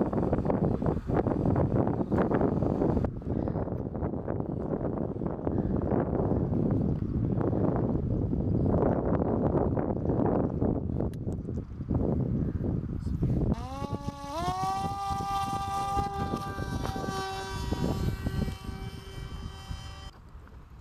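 Rough, even noise, then about two-thirds of the way in the Raven drone's electric motor and pusher propeller spin up with a quick rising whine. It settles into a steady high buzz for launch and flight, which fades near the end.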